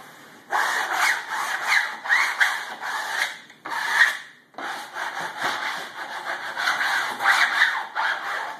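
Vinyl wallcovering being smoothed onto a wall, a run of scraping rubbing strokes over the sheet. The strokes break off briefly twice, a little past a third of the way through and again just after halfway.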